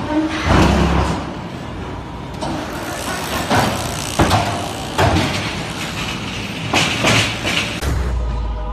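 Concrete block-making machinery running: a steady mechanical din with irregular metallic clanks and knocks, roughly one every second.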